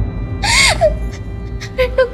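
A woman's tearful gasp, a short breathy sob with a rising and falling pitch, about half a second in, over a steady low background music score.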